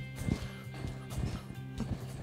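Background music with a few soft knocks from a Fox air-sprung suspension fork being pushed down and rebounding while its rebound damping is tested.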